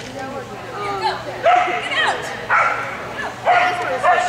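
Corgi barking several times in quick, sharp yips about a second apart while running an agility course, starting about a second and a half in.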